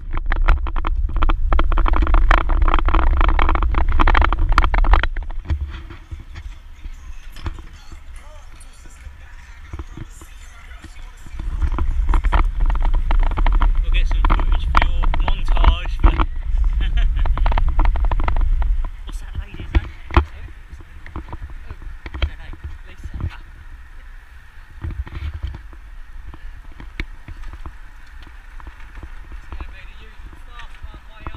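Wind buffeting the microphone of an action camera on a moving road bike: two long stretches of loud low rumble, over the first five seconds and from about 11 to 19 seconds, with quieter road and bike noise and scattered clicks between.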